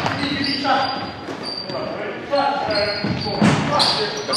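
Live sound of a basketball game in an echoing gymnasium: a basketball bouncing on the hardwood court, with a thud about three and a half seconds in, short high squeaks of sneakers, and players' voices calling out.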